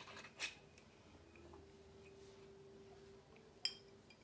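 Near silence with a faint steady hum through the middle, then a single short sharp click near the end, from a glass bottle being handled.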